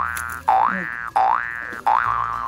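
Cartoon-style 'boing' sound effects: three quick tones in a row, each starting with a sharp attack and sliding upward in pitch before holding, then a fourth that starts near the end and is held steady.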